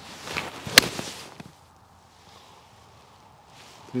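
Golf iron swung through the ball: a short rising swish, then one sharp click of the clubface striking the ball about a second in, with a brief rush as the club takes the turf after it, a clean ball-then-turf strike.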